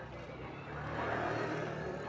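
A motor vehicle's engine running, growing louder to a peak about a second in and then easing off.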